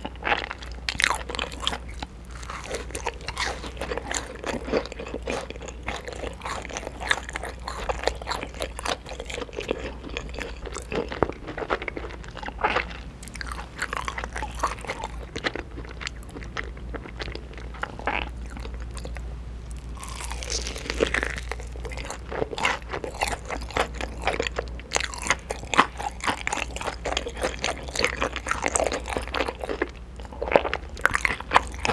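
Close-miked eating: chewing of soft cheese ball bread, then bites into crispy fried chicken in a sticky smoky barbecue glaze. Crisp crunches come thick and fast, louder and denser in the last third.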